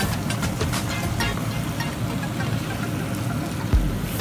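Chicken strips sizzling in a frying pan, with short scrapes as a spatula stirs them. Background music plays over it.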